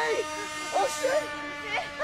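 A person crying out in pain: drawn-out, wavering wordless cries and moans, over a steady low sustained note.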